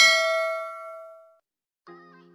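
A single bell-like ding sound effect, struck once and ringing out with several clear tones, fading away over about a second and a half. Near the end, music begins.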